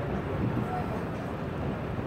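Outdoor city ambience: a steady low rumble with faint, indistinct voices in the background.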